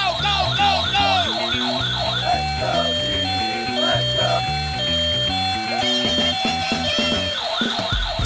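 Background music with a steady beat, over a fire-engine siren. The siren first warbles rapidly, then about two seconds in switches to a slower two-tone hi-lo wail.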